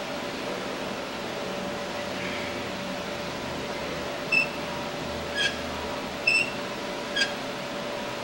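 Iron weight plates clinking on a loaded curl bar during biceps curls: four short, ringing metallic clinks about a second apart in the second half, over a steady background hum.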